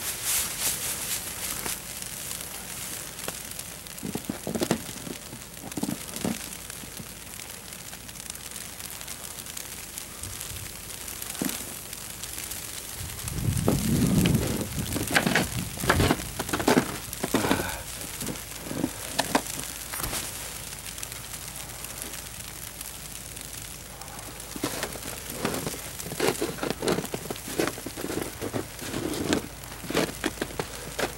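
Footsteps crunching and squeaking through fresh snow lying on older frozen snow, in irregular groups of short crunches. A louder, low muffled rush comes about halfway through.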